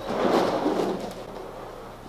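Roller skate wheels rolling on a hard kitchen floor: a rushing rumble that starts suddenly and fades away over about a second and a half.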